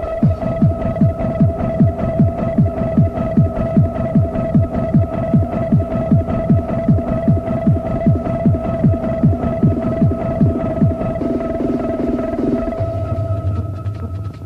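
Hard dance track from a DJ mix: a pounding kick drum at a fast steady beat, about two a second, under a held high synth note. About eleven seconds in, the kick drops out, leaving sustained synth notes that shift lower, a breakdown.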